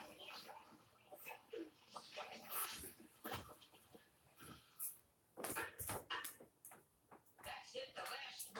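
Television audio heard faintly across a room: indistinct voices and a few sharp knocks and clatters from an old black-and-white comedy short.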